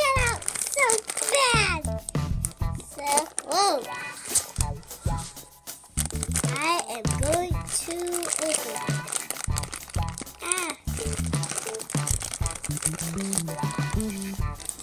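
Thin plastic toy bag crinkling and crackling as it is handled and pulled open by hand, with a voice singing a wavering tune over it.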